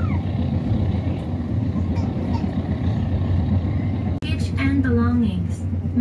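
Passenger train running, heard from inside the carriage: a steady low rumble with running noise. About four seconds in, after a brief drop-out, a recorded onboard announcement begins over it.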